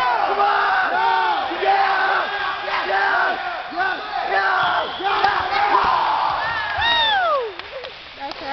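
Crowd of spectators shouting and cheering over one another, with one long falling shout near the end.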